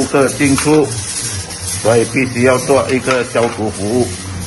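A person's voice speaking over a steady low hum.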